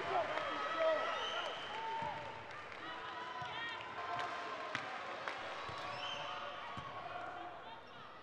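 Crowd in a large indoor volleyball hall between rallies: a steady murmur of many voices with scattered shouts from the stands, and a few sharp knocks of a ball around the middle.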